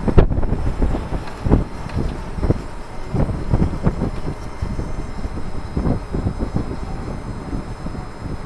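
Strong gusty wind buffeting the microphone: an uneven low rumble with irregular thumps and puffs throughout, loudest just after the start.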